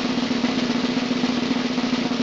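Snare drum roll played steadily, a rapid even rattle of strokes over a steady low ring.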